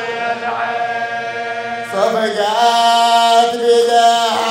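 A man's voice chanting a Shia mourning lament (rithā) in long, drawn-out melismatic notes without clear words; a held note gives way to a new phrase about halfway through that bends upward and is held again.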